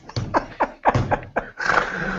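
Hearty laughter in quick breathy pulses, about four or five a second, trailing into a breathy stretch near the end.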